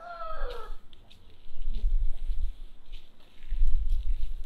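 A rooster crowing briefly at the start, the call falling in pitch, followed by a low rumble on the microphone.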